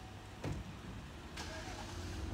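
Police SUV driving off slowly, its engine a low steady rumble. Two short clicks cut in, about half a second and a second and a half in.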